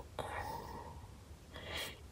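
Quiet pause between a woman's sentences: a light click just after the start, a faint murmured hum, then an intake of breath near the end before she speaks again.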